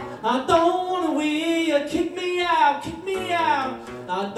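A man singing a drawn-out, wavering vocal line live, over a strummed acoustic guitar.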